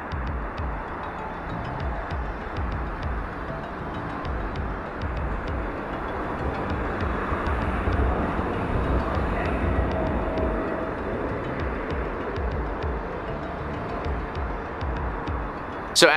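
Outdoor field-recording noise from a distant camera: a steady rumbling hiss with uneven low rumbling throughout, and no clear single event.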